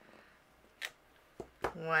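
Three short, sharp clicks and taps as a clear acrylic stamping block is lifted off the card stock and set down on the tabletop, the first about a second in and two more close together shortly after.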